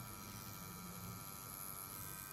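Faint, steady electric hum of a tattoo machine running while its needle is dipped into ink.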